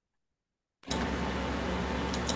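Dead silence, then about a second in a microphone's steady hiss with a low electrical hum cuts in suddenly, as the microphone is reconnected and goes live.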